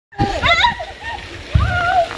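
Several women shouting and squealing excitedly in high voices, with a brief low rumble at the start and another about one and a half seconds in.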